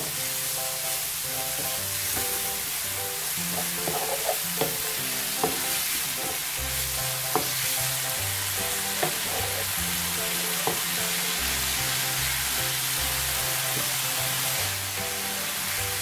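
Thin potato strips sizzling in a little oil in a non-stick frying pan as they are stirred and tossed with a wooden spoon, the spoon knocking against the pan now and then.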